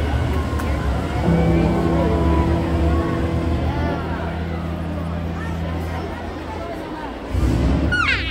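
Heavy vehicle engine running in a large arena, a steady deep rumble that grows louder again about seven seconds in, with a voice heard over it.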